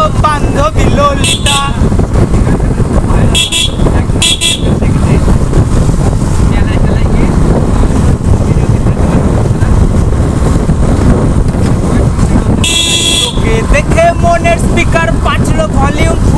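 Yamaha motorcycle riding along, its engine and wind noise on the microphone running steadily, with short horn toots about a second and a half in, twice more around four seconds, and a longer horn blast near the end.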